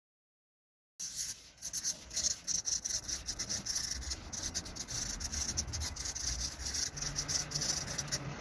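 Felt-tip marker writing on paper: a quick, irregular run of short scratchy, squeaky strokes that starts about a second in and keeps on.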